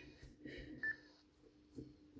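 A short electronic key beep from an ICOM ID-52 handheld transceiver about a second in, as its menu buttons are pressed, with a few faint button-press sounds around it.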